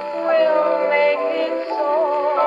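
A 1939 Decca 78 rpm shellac record playing on an HMV 130 wind-up acoustic gramophone: a 1930s popular song, with held notes moving from one pitch to the next.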